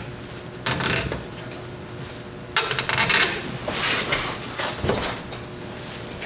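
Hands working the plastic push-through mounting ties and locking clips of an electric fan on a radiator. A short clatter comes just under a second in, a longer, louder clattering rustle about two and a half seconds in, then softer handling noises.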